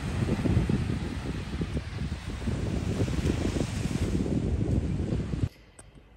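Wind buffeting a phone's microphone at the seashore, a heavy low rumble with the wash of small waves beneath it. It cuts off suddenly about five and a half seconds in.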